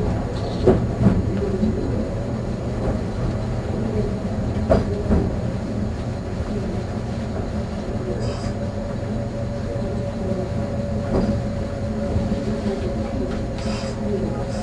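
Meitetsu Panorama Car heard from inside its front compartment as it moves slowly: a steady rumble from the running gear, with a few sharp knocks in the first five seconds and a steady hum from about six seconds in.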